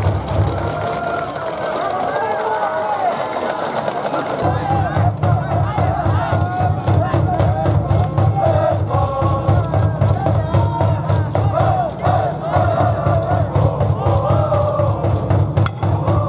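A school cheering section in the stands playing a cheer song: brass band music with chanting voices. A steady drum beat comes in about four seconds in.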